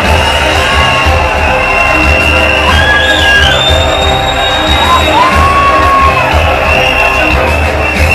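Loud live concert intro music with a heavy, regular bass beat, played over a venue sound system, with the crowd cheering and whooping. A few high held notes slide in and out around the middle.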